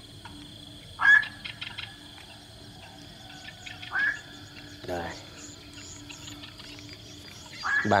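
Bird calls in open wetland: three short, loud calls a few seconds apart, each rising sharply in pitch, over a steady high insect drone.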